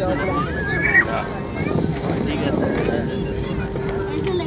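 Airliner cabin on the runway: the steady rumble of the engines and rolling, with passengers talking over it. About a second in, a brief high-pitched voice rises sharply, the loudest moment.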